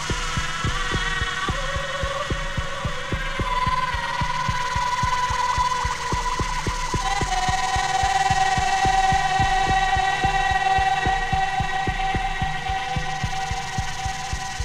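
Live electronic music: a fast, regular low pulse under sustained held tones that shift to new pitches about four and seven seconds in.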